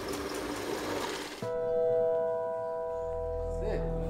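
A metal-drilling machine runs for about a second and a half as a steady noisy whir, then cuts off suddenly. Music takes over: a chord of sustained held tones, joined near the end by a low drone.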